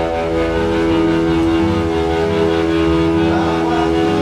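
Live rock band playing in a small rehearsal room: electric guitar and drums, with one long chord held steady over changing low notes. The chord breaks up near the end as the playing moves on.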